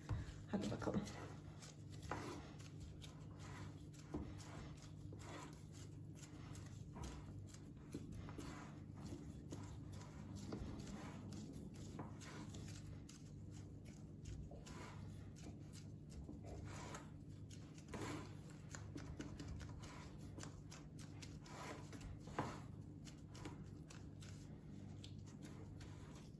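Soft, scattered rustles and light taps of rubber-gloved hands pressing cookie dough into a metal baking pan, over a steady low hum.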